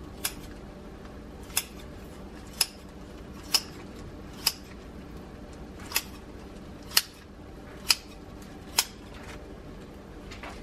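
Metal kitchen shears snipping through the plastic packaging of salmon fillets. Each close of the blades gives a sharp click, nine in all, about one a second.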